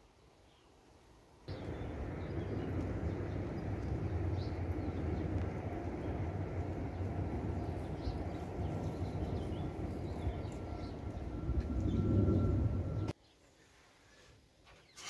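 Outdoor background noise: a steady low rumble such as wind on the microphone or distant traffic. It starts about a second and a half in and stops abruptly near the end, with a faint steady whistle-like tone in its last few seconds.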